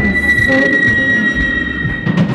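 Live experimental band's electronic music: a steady high-pitched whine held over a low droning rumble, with no singing.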